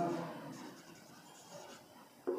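Marker pen writing on a whiteboard: faint scratching strokes as a word is written out.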